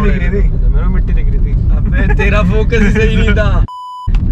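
Men talking inside a moving car over the steady low rumble of road and engine noise in the cabin. Near the end this is cut off abruptly by a short, steady 1 kHz test-tone beep, the tone that goes with colour bars.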